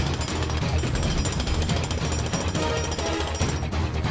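Jackhammer hammering rapidly and continuously over background music, cutting off shortly before the end.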